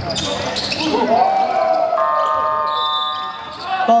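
Gym horn at the scorer's table sounding one steady electronic tone for about a second, signalling a called timeout, over voices and ball bounces in the echoing hall.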